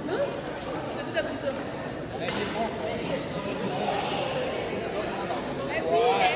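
Overlapping, unintelligible children's chatter filling a large gymnasium, with a few sharp hits of badminton rackets striking shuttlecocks, the loudest about a second in.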